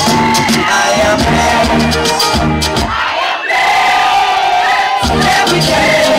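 Loud party music with a regular bass beat, mixed with a crowd singing and shouting along. The beat drops out for about two seconds in the middle, leaving a long held vocal note, then comes back.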